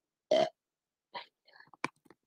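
A short, throaty vocal sound from a person, lasting a fraction of a second, followed by a few faint soft sounds and one sharp click near the end.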